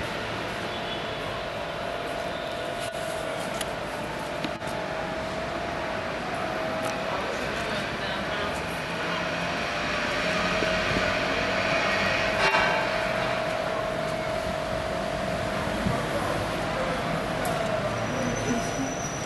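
Steady city street noise with a constant mid-pitched hum, growing a little louder about halfway through.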